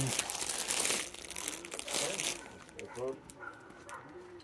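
Close rustling and crinkling of plastic-wrapped jerseys and shirt fabric, loudest in the first two and a half seconds, then fading.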